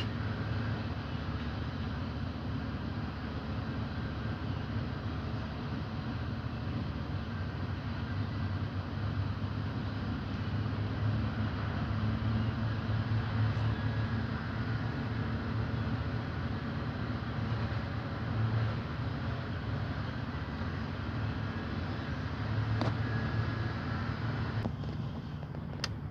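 A steady low machine hum, like an engine running, swelling a little now and then, with a single short click near the end.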